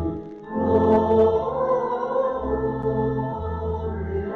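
Choir singing sacred music over held low accompanying notes, with a short break just after the start before the next phrase begins.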